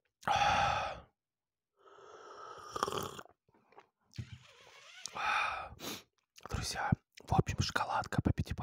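Several long, breathy, whispery exhales and sighs right against a lapel microphone, followed near the end by a quick run of clicks and crackles.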